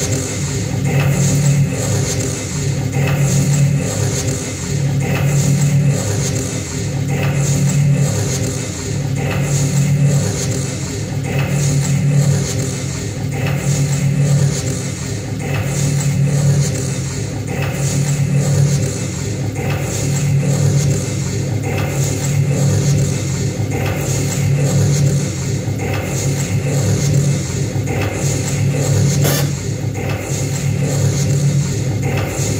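Live electronic noise music: a dense, loud wall of sound with a low throb that pulses in a loop about every two seconds, overlaid with hiss and sharp clicking accents.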